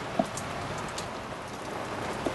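Steady background hiss with a few faint clicks in the first second, as a screwdriver is picked up and set against a screw on the carburetor's top cover.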